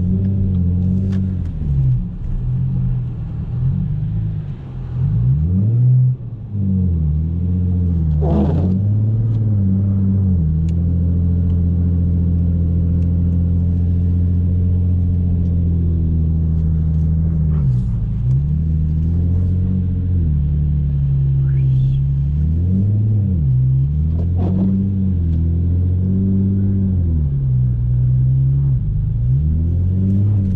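Ford Mustang engine heard from inside the cabin while the car is driven on snow. The revs rise and fall several times in the first ten seconds, hold steady through the middle, then surge and drop again near the end.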